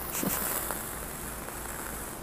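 Fingernails scratching a coarse-woven upholstery fabric: a steady, even scratchy hiss.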